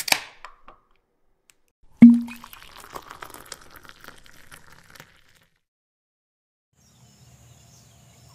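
Sound effect of a soda bottle being opened: a sharp click at the start, then a loud pop about two seconds in, followed by about three seconds of crackling fizz that dies away.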